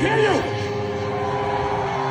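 Live heavy metal band through a PA: a short rising-and-falling wail at the start, then the drums drop out and a guitar chord is held ringing as several steady tones.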